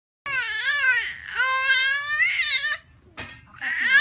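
A young infant crying in two long, high wavering wails, with a brief catch near three seconds and a new cry starting just before the end.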